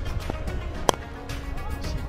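Background music with a steady bass beat. About a second in comes a single sharp crack of a cricket bat striking the ball.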